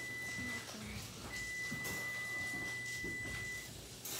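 A steady high-pitched tone, like a beep held on one note: it sounds for about the first half-second, stops, then comes back for over two seconds, over a faint low hum.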